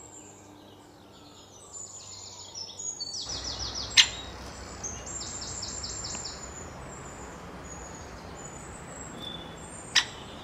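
Small birds singing high, rapid trills of quickly repeated notes, in bursts, over outdoor background hiss. One sharp, loud click about four seconds in, and another at the end.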